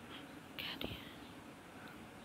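Wire whisk stirring thick gram-flour batter in a plastic bowl, faint, with a short swish about half a second in and a sharp tap of the whisk just after.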